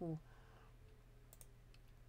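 A couple of faint, quick computer mouse clicks just past the middle, over a low steady hum.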